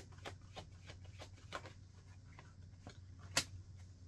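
A tarot deck shuffled by hand: soft, irregular clicks and flicks of the cards, with one sharper snap about three and a half seconds in.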